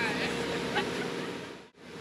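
Faint room noise with weak background voices in a pause between answers, fading and dropping out to silence for a moment near the end, like an edit cut.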